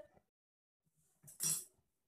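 A brief metal clink and scrape about one and a half seconds in, as a tin can with a steel cup set in its top is picked up.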